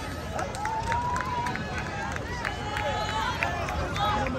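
A troupe of tbourida horses moving on the dirt arena, with crowd noise around them and a few high, drawn-out calls about a second in and again toward the end.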